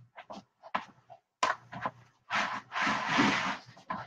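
Hands pulling apart a rotisserie chicken in its plastic tray: a few short, irregular rustles and crinkles, then one longer rustle in the second half.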